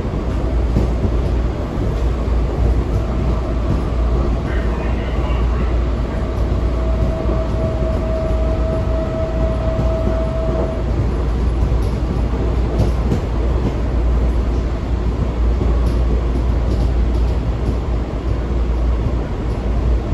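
Washington Metro railcar running at speed, heard from inside the car: a steady low rumble of the wheels and running gear on the track. Midway a single steady whine holds for about four seconds.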